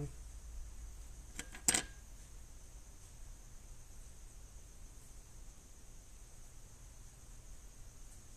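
A few light clicks of small metal rocker-arm parts being handled, about one and a half seconds in, the loudest a single sharp click; otherwise only a faint steady low hum.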